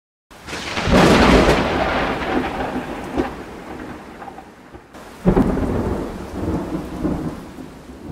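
Two rolls of thunder over a steady hiss of rain: the first breaks about a second in and the second about five seconds in, each dying away slowly.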